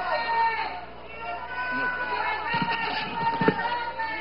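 Indistinct voices talking, with no clear words, and two sharp knocks about two and a half and three and a half seconds in.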